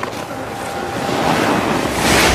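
Trailer sound effect: a rushing, wind-like noise that swells steadily louder, building toward a hit.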